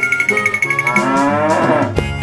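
A cow mooing once, a long call that rises in pitch through its second half, over background music.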